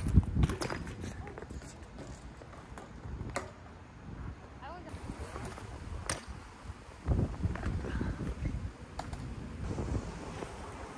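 BMX bike on a concrete skatepark box: a heavy landing thud right at the start, a sharp clack about six seconds in as the bike hops onto the box, then tyres and metal rolling and scraping on concrete for about a second and a half.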